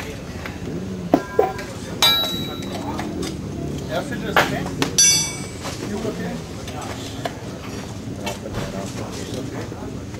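Steel tyre levers clinking and ringing against the metal rim of a spoked motorcycle wheel as a knobby tyre is levered off. There are several sharp metallic strikes in the first half; two of them ring on briefly.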